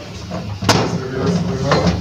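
A single sharp knock on a hard surface about a third of the way in, over a low background hum and brief murmured voices.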